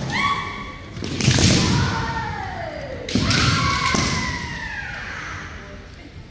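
Kendo fencers' drawn-out kiai shouts, each falling in pitch. Loud thuds of an attack land about a second in and again about three seconds in: bamboo shinai strikes and stamping feet on the wooden gym floor.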